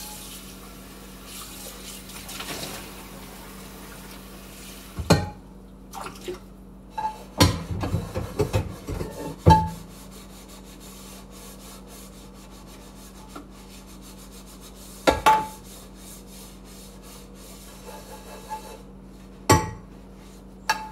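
Dishes being washed by hand at a kitchen sink: tap water runs for the first few seconds and shuts off, then a metal saucepan and dishes clank and knock against each other, with a burst of clatter near the middle and single ringing knocks later.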